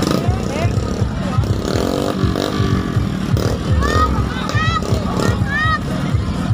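Motorcycle engine running at low speed, with crowd voices over it and high calls near the end.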